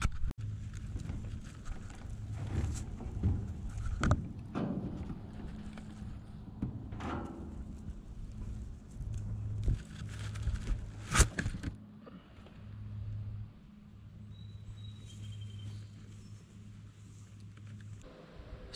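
Knocks and thumps from a wooden, wire-mesh rabbit hutch being opened and reached into. There are several sharp knocks in the first two-thirds, over a low steady hum, and it grows quieter near the end.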